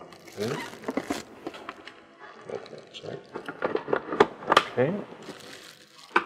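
Thin plastic bag crinkling and rustling in irregular bursts as it is handled around a stand mixer's bowl.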